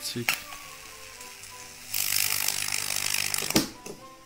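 A sausage wired between two metal forks to mains power hisses and sizzles for about a second and a half as current passes through it, cutting off with a click. A short click comes just before, and a faint electrical hum runs underneath.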